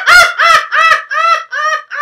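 A woman laughing loudly and heartily, a rapid run of about seven 'ha' pulses that gradually grow a little softer.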